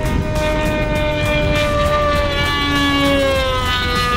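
Radio-controlled model airplane engine running as a high, steady whine whose pitch falls slowly as the plane flies past. Wind noise buffets the microphone underneath.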